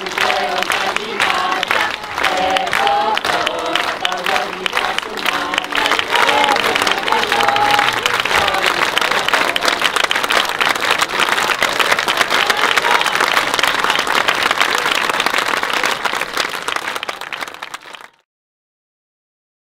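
A theatre audience applauding steadily for the cast's bows, with a tune heard over roughly the first half. The applause fades out near the end.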